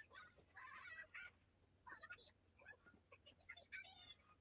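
Faint rustling and rubbing of cotton macrame cord as it is handled, knotted and pulled tight: soft, irregular scratches.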